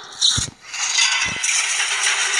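Cartoon battle sound effects: a sudden blast with a low thump, then a steady high crackling hiss of electricity striking robots, with another thump about a second in.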